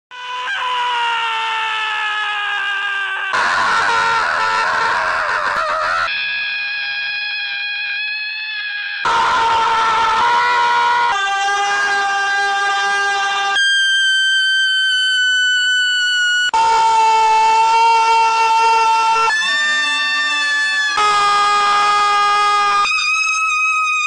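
Lambs and goats bleating, edited back to back: about ten long, loud, held cries, each lasting two or three seconds and cutting off suddenly into the next at a different pitch.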